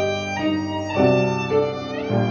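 Violin playing a slow melody of held notes, changing note about every half second, over upright piano accompaniment; a new low piano chord comes in about halfway through.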